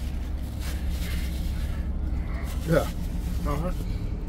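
Steady low drone of a passenger ferry's engines, heard from inside the ship, under faint background chatter; a man says a short word near the end.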